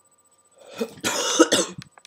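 A man coughing hard: one short cough about half a second in, then a longer rough cough lasting nearly a second. It is the cough of someone who is ill.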